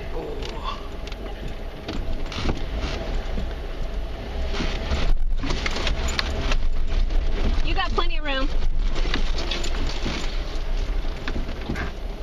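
Off-road vehicle crawling slowly over bare rock, heard from inside the cab: a steady low engine rumble with repeated knocks and crunches from the tyres and chassis on the rock.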